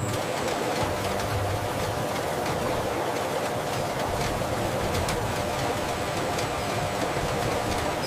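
Textile fibre-processing machinery running: a steady, even mechanical noise with a faint underlying hum.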